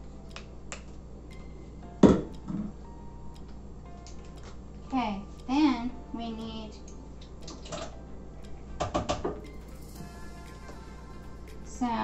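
Kitchen utensils, measuring spoons and cups, clattering and knocking on a counter. There is a sharp knock about two seconds in and a quick run of clicks near the end, with a brief wordless vocal sound in the middle.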